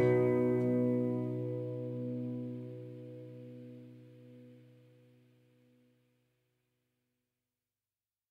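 The song's last chord, on acoustic guitar, ringing out and fading away, gone by about six seconds in.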